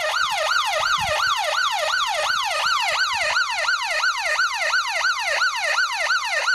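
SAMU ambulance siren in its fast yelp mode, its pitch sweeping up and down about four times a second.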